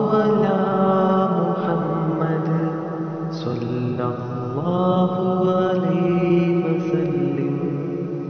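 A voice chanting a salawat, blessings on the Prophet Muhammad, drawn out in long held notes. A new phrase starts about four and a half seconds in, its pitch gliding up into the held note.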